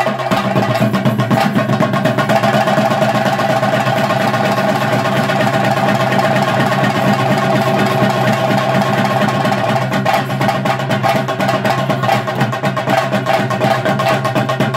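Chenda drums played in a fast, dense stream of strokes for theyyam, over steady droning tones.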